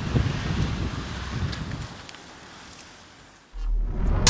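Wind buffeting the microphone outdoors, fading away over about three seconds. Near the end a deep electronic bass note comes in, starting the outro music.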